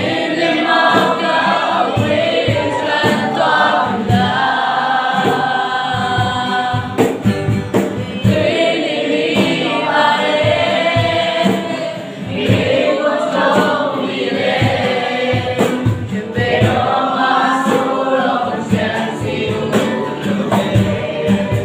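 A live worship song: a man and a woman singing together, accompanied by two strummed acoustic guitars and a cajon beating time.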